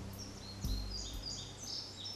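Birds chirping in a quick run of short, high notes, with low sustained music notes fading out underneath in the first part.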